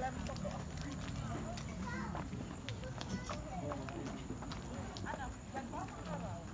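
Outdoor garden ambience: faint voices talking at a distance, with scattered light clicks and footsteps over a low steady rumble.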